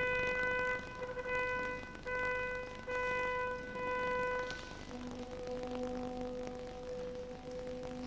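Instrumental music: a wind instrument sounds the same high note in four long held blasts with short breaks between them. From about halfway through, softer and lower held notes take over.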